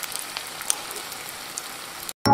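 An egg frying in hot oil in a pan: a steady sizzle with scattered small crackles and pops.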